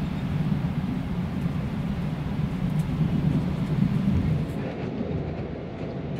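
Steady low rumble inside a passenger carriage of the NSW XPT train running along the track, with a few faint light clicks.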